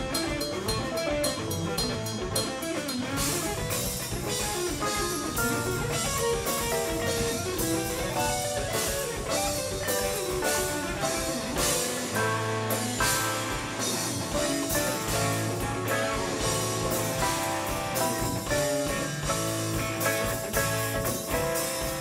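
Live band playing an instrumental passage with electric guitar, electric bass, drum kit and keyboards. It is recorded as a mix of the soundboard and room microphones. About halfway through, the bass settles into a steady low line under the drums.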